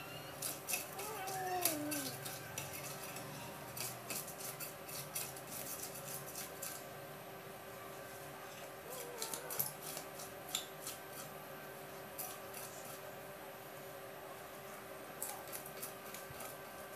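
Scales being scraped off a rohu fish against the blade of a boti: quick runs of sharp, scratchy clicks in bursts with short pauses between them.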